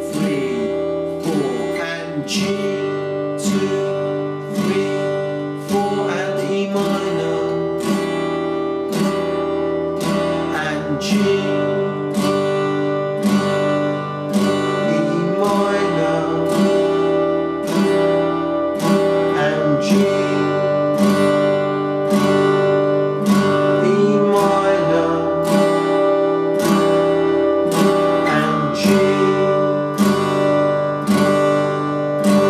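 Yamaha acoustic guitar strummed in steady single down strums, about three every two seconds, changing back and forth between an open E minor chord and a G chord every few seconds.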